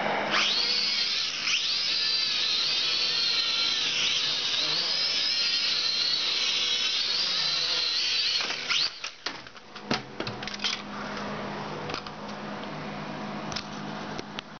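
Syma X5C-1 toy quadcopter's motors and propellers whining high, the pitch wavering up and down with the throttle as it lifts off and flies. About eight and a half seconds in the whine cuts off among a few sharp knocks.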